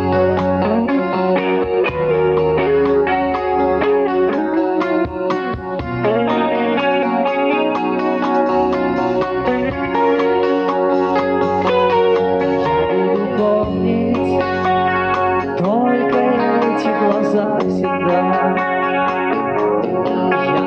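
Rock band playing an instrumental passage: an electric guitar with chorus-type effects carries the melody with bent, gliding notes over drums and bass, with no vocals.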